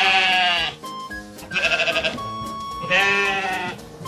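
Sheep bleating three times, the middle bleat quavering, over background music.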